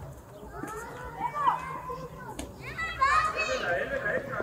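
Young footballers shouting and calling out on the pitch, with high calls about a second in and again near the end, and a single sharp knock a little past the middle.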